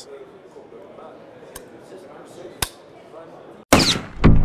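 Two sharp clicks about a second apart from the Browning A-Bolt III rifle as its trigger is worked, over a low murmur of hall chatter. Near the end a sudden loud whoosh starts the outro music.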